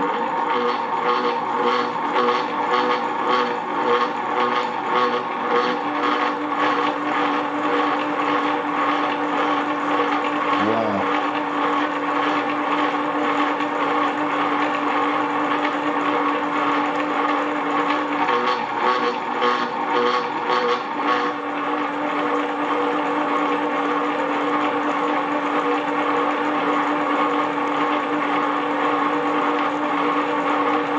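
1950s pillar drill starting suddenly and running in its high-torque gear, a twist drill boring into thick steel: a steady whine with a rapid even chatter of the cutting, which smooths out a little after about twenty seconds.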